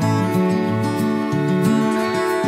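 Instrumental lounge music led by plucked acoustic guitar, over a light, steady beat.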